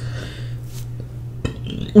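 Fingers dipping food into a glass bowl of sauce: soft wet handling with a few faint clicks against the glass, over a steady low hum.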